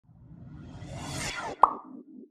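Logo-intro sound effect: a whoosh swelling over about a second and a half, then a sharp pop with a brief ring, the loudest moment, followed by a low fading tail.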